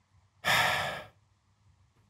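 A single heavy sigh about half a second in: one breathy exhale, just over half a second long, that fades out. It is a sigh of exasperation at code that has just failed its tests.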